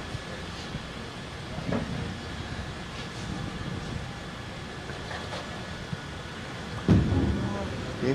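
Steady bowling-alley hubbub with a few faint clicks, then near the end a bowling ball hits the lane and rolls with a loud low rumble.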